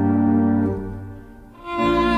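Violin and church organ playing a slow piece together in sustained notes; the sound fades away about a second in, and a new chord from both enters just before the end.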